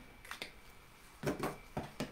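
A few faint, scattered clicks and soft handling noise from a metal surgical instrument, a scalpel handle, being picked up and moved.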